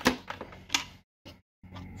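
A plastic ball-lock keg disconnect being pushed onto a post on a pressure fermenter's lid: a sharp click at once, fainter ticks, and another click about three-quarters of a second later.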